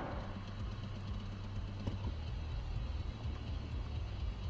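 Low, steady hum of a car heard from inside the cabin, the car stopped and idling.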